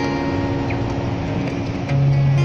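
Acoustic guitar chord left ringing and slowly fading over steady street-traffic noise, with a new strum right at the end.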